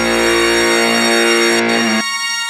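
Live dangdut band music with no singing: a held instrumental chord, the bass dropping out under it about two-thirds of a second in.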